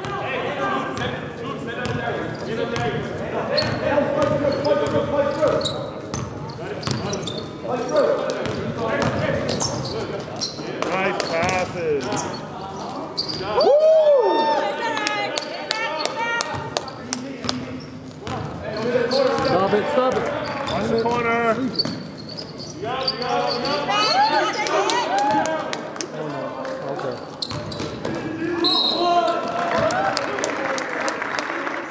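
Basketball dribbled and bouncing on a gym court during live play, a run of short sharp bounces mixed with indistinct shouting voices.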